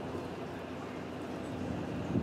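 Steady, fairly quiet outdoor background noise with a faint hum and no distinct events.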